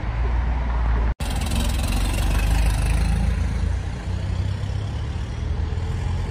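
Street traffic: a steady low engine rumble from road vehicles, with a brief sudden dropout about a second in.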